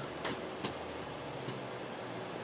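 Three faint clicks of a computer mouse, unevenly spaced, over a steady low room hum.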